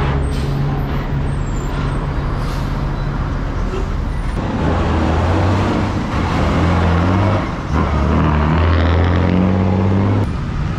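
Heavy diesel road traffic passing close: a truck carrying gas cylinders pulls away, then a bus's diesel engine gets louder and climbs in pitch as it drives past, dropping off briefly about three-quarters of the way through before picking up again.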